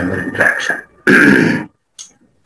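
A man's voice speaking briefly, then a short, rough throat clearing about a second in.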